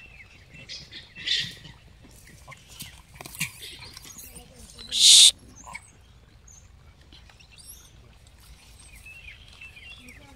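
Outdoor scrub ambience with small birds chirping in short falling notes, scattered clicks and rustles, and one loud, harsh half-second burst about five seconds in.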